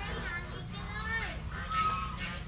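Distant high-pitched voices calling and chattering, over a steady low background rumble.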